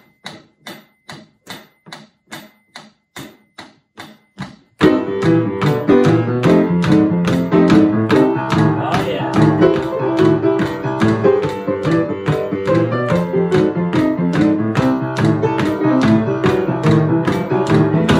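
A steady ticking beat at about four ticks a second. About five seconds in, boogie-woogie piano comes in suddenly and loud, with the drum beat carrying on under it.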